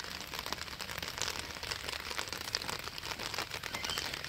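Quiet background with faint, irregular light crackling and ticking.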